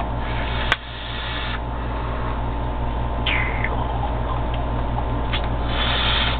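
Long drag on a sub-ohm vape tank fired at 72 watts: airflow hiss through the atomizer near the start and again at the end, over a steady low hum. There is a sharp click early on and a short falling squeak a little after three seconds.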